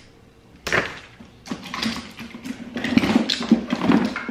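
Hair tools and their cords being handled and set down in a suitcase: irregular clacks, knocks and rustles, thickening over the last two seconds, with a low steady hum underneath.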